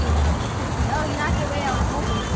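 Outdoor background noise: an uneven low rumble, with faint voices in the middle.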